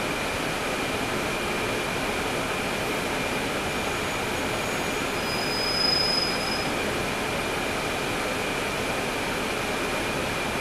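Inside a NABI 40-SFW transit bus near the rear: the Cummins ISL9 diesel and the bus's running gear give a steady rumble and hiss, with a thin high whine running throughout. A brief high-pitched squeal rises just before the middle, as the bus starts to inch forward.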